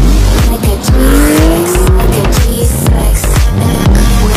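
Race-car sound effects, tyres squealing and skidding with rising and falling pitch, laid over a hip-hop track whose heavy bass beat kicks in right at the start.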